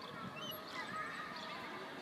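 A swing squeaking as it swings back and forth, the squeaks coming round again with each swing, over a soft steady hiss.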